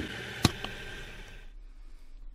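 A single sharp click about half a second in, followed by a fainter one, over low background hiss that drops away about a second and a half in.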